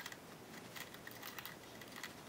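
Faint small ticks and scrapes of thin braided picture-hanging wire being twisted around itself by hand to tie it off.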